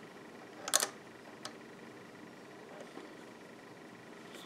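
Faint handling sounds of rubber bands on a plastic loom: a short scrape just under a second in and a light click a little later, over quiet room hiss.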